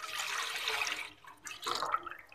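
Full-fat milk poured in a stream into a stainless steel saucepan, splashing steadily for about a second, then a shorter splash as the last of it trickles in near the end.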